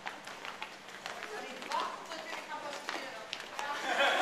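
Footsteps of a group of people walking and jogging on a concrete floor, many quick shoe taps and scuffs, with voices chattering underneath.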